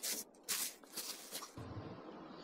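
Faint crinkly rustling of a plastic dog-waste bag being handled, in a few short bursts, followed by a low rumble.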